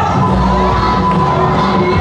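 Yosakoi dance music played loud over a sound system, with a group of dancers shouting together over it.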